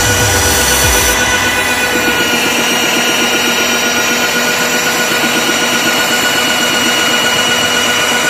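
Magnetic drill's electric motor running with a steady whine as its bit is fed slowly into a rubber ship tyre fender, the bit cutting hot enough to smoke the rubber from friction. A low rumble stops about a second in.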